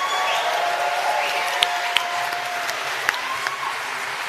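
Audience applauding steadily in a large hall, greeting a two-star award as it is announced.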